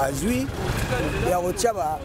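Speech over the steady rumble of road traffic.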